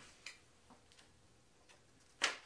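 Near silence: room tone with a few faint, unevenly spaced ticks.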